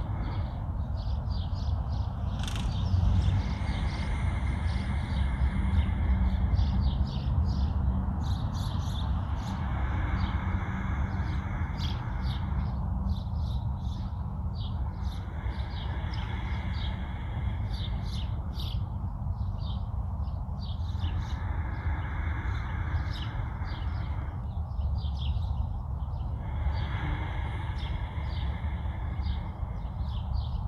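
Slow, deep breaths close to a clip-on microphone, each swelling and fading about every five to six seconds, over a steady low wind rumble on the microphone and frequent short bird chirps.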